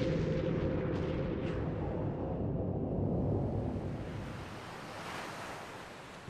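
Cinematic logo-reveal sound effect: a deep, noisy rumble that fades slowly, with a brief whoosh about one and a half seconds in.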